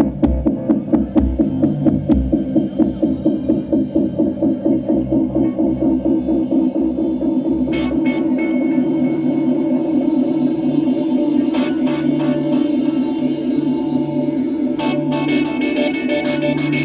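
Live band music led by keyboards: a rapidly pulsing keyboard part over a low drum beat. The beat drops out about halfway, leaving a steady sustained wash of chords, and short sharp percussion hits come back near the end.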